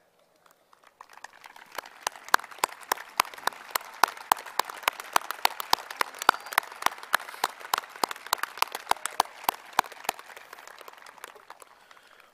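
Applause from the crowd, with sharp, distinct hand claps close to the microphone over a denser clapping background. It starts about a second in and thins out near the end.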